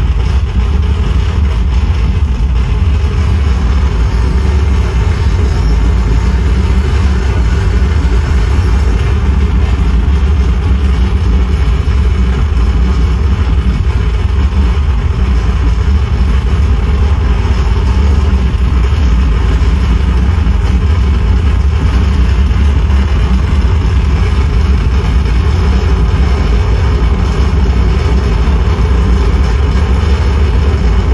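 Live harsh noise from a tabletop rig of effects pedals and a mixer: a loud, unbroken wall of distorted noise, heaviest in a deep low rumble, holding steady without pauses.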